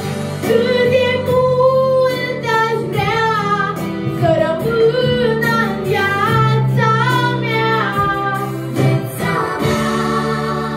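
A young girl singing a Romanian pop song into a handheld microphone over an instrumental backing track. Her voice drops out about nine seconds in while the accompaniment carries on.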